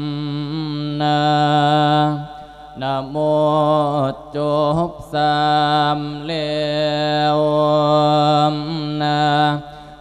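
A Buddhist monk chanting an Isan thet lae sermon: one male voice holding long, steady notes with wavering ornaments, with short breaks for breath about two, four and five seconds in.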